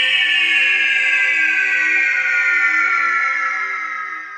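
Synthesized logo sting: a bright, buzzy tone sliding slowly downward in pitch over a low pulsing drone, starting to fade near the end.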